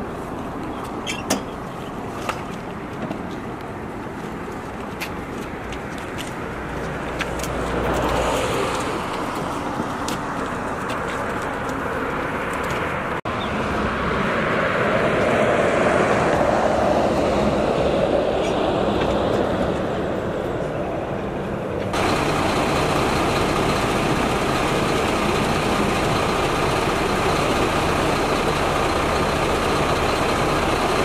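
Steady road traffic and vehicle engine noise with faint voices, a few sharp clicks early on, and the background changing abruptly twice, about 13 and 22 seconds in.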